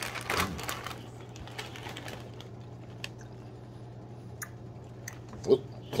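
Plastic cereal bag crinkling as a hand digs out pieces of dry cereal, then scattered small clicks and crunches, under a steady low electrical hum.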